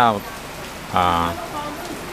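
Steady rain falling, an even hiss.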